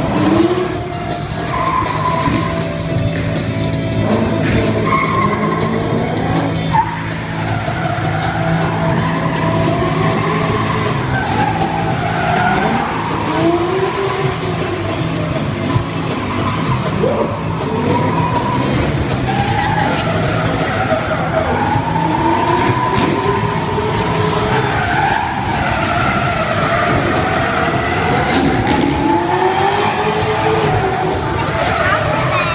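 Cars skidding, tyres squealing in repeated wails that rise and fall in pitch, with engines revving underneath, over music.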